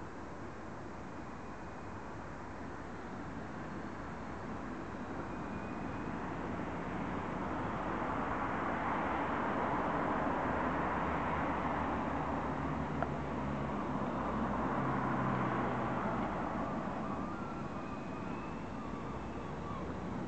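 Small electric coaxial RC helicopter (Esky Big Lama) whirring in flight, its rotor and motor noise growing louder as it comes close overhead through the middle, then fading as it moves away.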